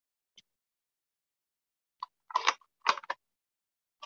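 A faint tick, then a quick cluster of sharp plastic clicks and taps about two to three seconds in, from a hard plastic stamp ink pad case being handled, closed and set aside.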